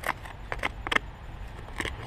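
Small hand shovel digging and scraping into soil, about five short scrapes and crunches.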